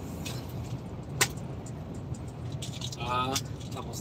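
Steady low drone of a truck's engine and road noise heard inside the cab while cruising on a motorway, with scattered sharp clicks and rattles, the loudest about a second in. A brief voice sound comes a little after three seconds.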